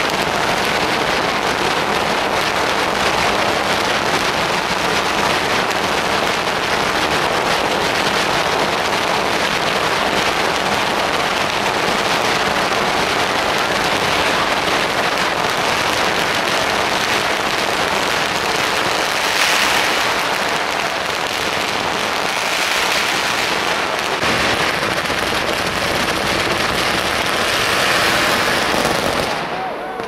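Long strings of Chinese firecrackers hung from poles going off in a continuous dense crackle of rapid bangs, which stops shortly before the end.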